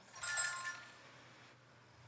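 Game-show electronic chime ringing once as a called letter is revealed on the puzzle board, marking a correct letter. It is a bright chord of several steady tones that fades away in under a second, leaving faint room tone.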